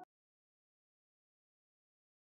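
Silence: the sound track goes dead as background music cuts off right at the start.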